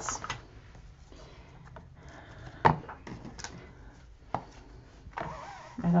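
Quiet handling of plastic-wrapped packs of paper journaling cards, faint rustling with two sharp clicks, the louder about two and a half seconds in and a smaller one just over four seconds in.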